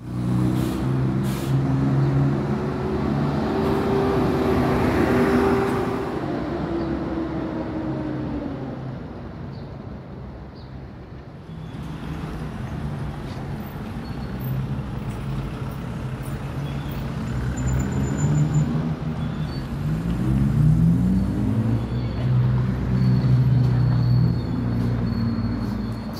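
City street traffic: motor vehicle engines running and passing close by. Their pitch rises as they accelerate, once about five seconds in and again about twenty seconds in, with a quieter lull in between.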